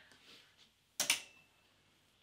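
A hanger being hung on a metal clothing rail: faint rustling of fabric, then one sharp click about a second in as the hanger's metal hook meets the rail, with a brief metallic ring after it.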